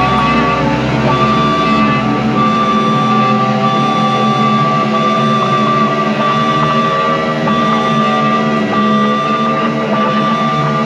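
Dean electric guitar playing a distorted rock part, with notes held and ringing on. The lowest notes drop away about three seconds in.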